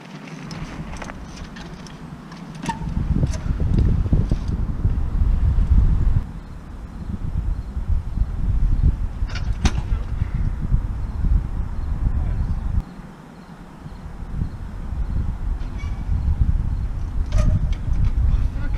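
Wind buffeting the microphone in a low rumble that comes and goes in long gusts, with a few sharp clicks in between.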